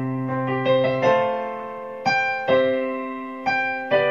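Piano playing a I–IV–I–V chord progression with both hands, chords struck about once a second and left to ring and fade.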